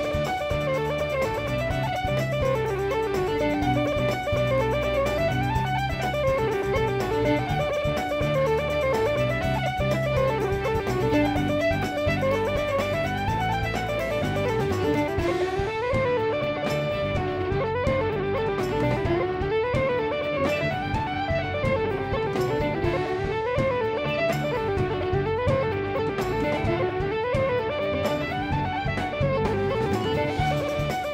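Live band playing a traditional Irish jig: a fiddle carries a quick, ornamented melody over electric bass, guitar and drums. The cymbals and percussion drop back about halfway through, leaving the fiddle and low parts more exposed.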